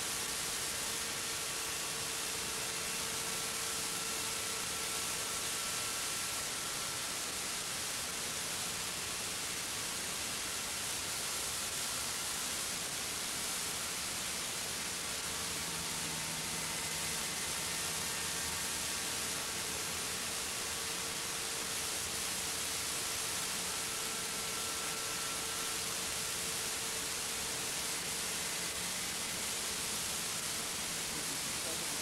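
The GMP King Cobra model helicopter's two-stroke glow engine and rotors running steadily in flight, heard as an even hiss with a faint engine tone drifting in and out.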